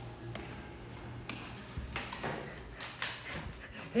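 Footsteps of slide sandals on a tiled floor, a short tap or slap roughly every half second, over a steady low hum.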